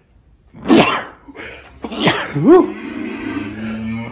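A man coughing in a fit, several harsh coughs with voiced gasps between them, set off by a hay allergy.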